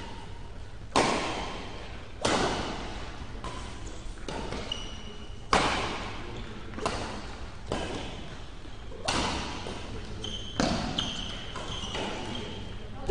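A badminton rally: about nine sharp racket strikes on the shuttlecock, one every second or so, each echoing in the hall. Short high squeaks from shoes on the court floor come between the shots.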